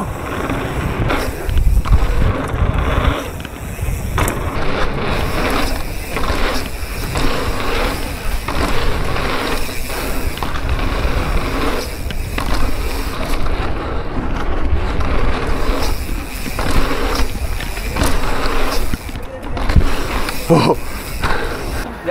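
Bicycle tyres rolling fast over a dirt and paved BMX track, with rumble and wind on a bike-mounted camera and irregular knocks as the bike runs over the bumps.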